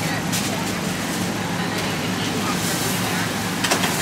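Steady city street traffic noise: a continuous low rumble of motor vehicles, with a couple of faint light clicks, one just after the start and one near the end.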